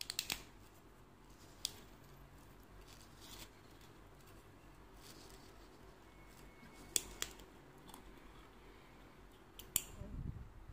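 Metal screw cap being twisted off a wine bottle: scattered sharp clicks as the cap turns and its seal gives, a cluster at the start, a pair about seven seconds in and another pair just before the end.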